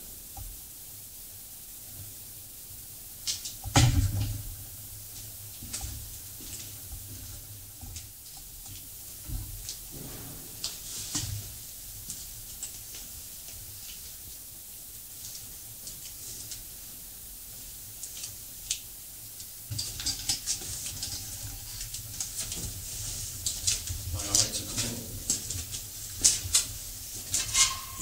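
Footsteps and handling noises on a gritty concrete floor and steps, with one loud thump about four seconds in and a busier run of scuffs and clicks in the last third.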